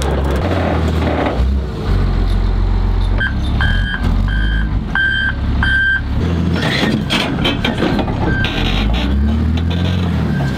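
Heavy wheel loader's diesel engine running, with its reversing alarm beeping about five times, roughly one beep every two-thirds of a second, a few seconds in. Some metallic knocks follow near the middle.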